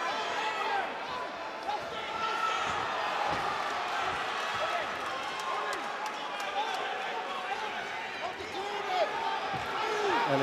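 Ringside crowd shouting and calling out, many voices overlapping, with occasional dull thuds as the bare-knuckle fighters trade blows.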